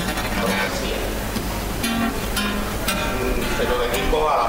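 Recorded flamenco guitar music, a soleá played as a backing track.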